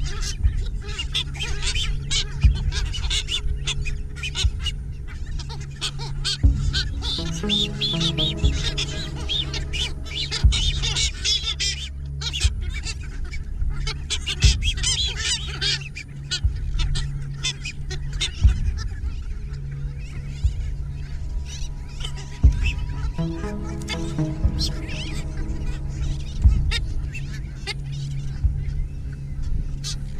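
A nesting colony of masked boobies calling, many short overlapping calls from birds close by and all around.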